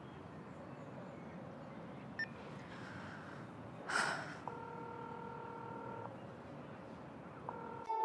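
A telephone ringback tone heard while a call is placed on a mobile phone: a steady tone rings for about a second and a half, then starts again just before the end. A faint beep comes about two seconds in, and a short rustle just before the first ring.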